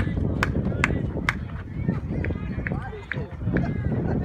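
Ambient sound of a youth baseball game: distant calls and chatter from players and spectators over a low outdoor rumble. Three sharp snaps about half a second apart come in the first second and a half.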